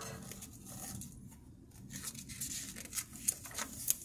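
Pages of a hardcover picture book being handled and turned: a faint paper rustle, with a few short, sharp flicks and taps in the second half.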